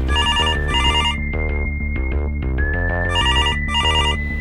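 A telephone ringing in a double-ring pattern, two short trilling rings close together right at the start and again about three seconds in, over background music with a low repeating bass.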